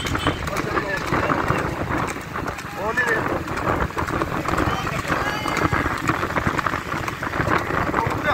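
Horse pulling a two-wheeled wooden cart at speed on a paved road: hoofbeats and cart noise mixed with wind on the microphone and a motor running, with voices shouting over the top.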